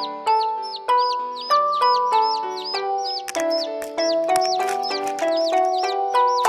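Instrumental children's song music: a bright melody of held notes with a high, chick-like peeping chirp repeating about three times a second over it.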